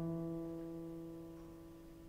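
A single chord on a Steinway grand piano, held and slowly fading with no new notes played.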